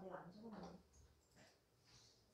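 Near silence, with a faint, brief voice in the first second.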